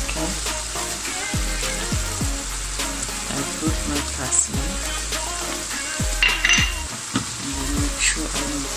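Sliced mushrooms sizzling in butter and olive oil in a frying pan, stirred with a spatula. A brief clatter of the utensil against the pan about six seconds in.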